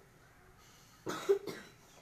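Black francolin in a cage giving one short, harsh, rasping two-part call about a second in.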